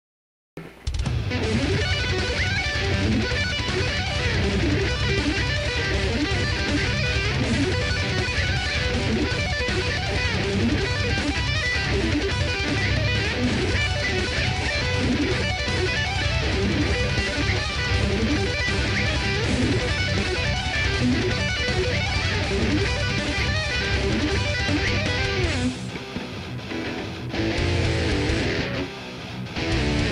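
Electric guitar playing fast heavy-metal riffs, starting about half a second in and dropping back briefly twice near the end.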